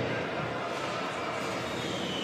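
Steady background noise of an ice hockey arena's broadcast sound, with no clear single event. A faint high steady tone comes in near the end.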